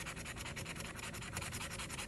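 Scratch-off lottery ticket having its coating scratched off in rapid, even back-and-forth strokes.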